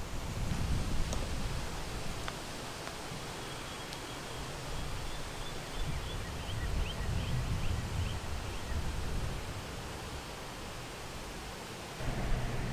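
Wind buffeting the microphone in uneven low gusts over open outdoor ambience, with a faint run of short high chirps in the middle.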